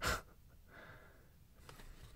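A man's short, sharp breath out at the start, then faint rustling and a few light clicks of trading cards being slid through his hands.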